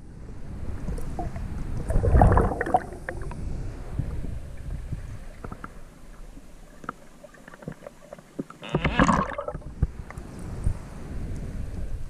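Water and a swimmer's movement heard underwater through a GoPro's waterproof housing: a steady muffled low rumble, with louder sloshing surges about two seconds in and about nine seconds in.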